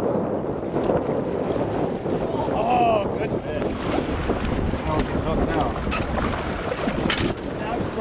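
Strong wind buffeting the microphone over choppy lake waves around a small fishing boat, a steady rushing rumble. A short, sharp noise stands out a little after seven seconds in.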